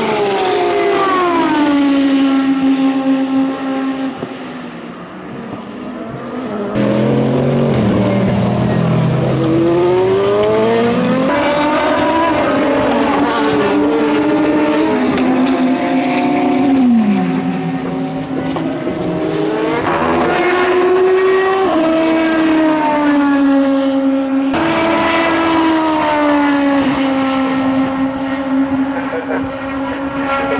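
Toyota TS030 Hybrid LMP1 prototype's V8 racing engine heard from trackside in several joined clips. The pitch slides down as it passes, climbs as it accelerates, steps through gear changes, and drops on downshifts.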